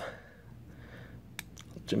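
A single sharp click about one and a half seconds in, with fainter ticks after it, from a Tac Force TF801 spring-assisted folding knife as its blade is folded shut.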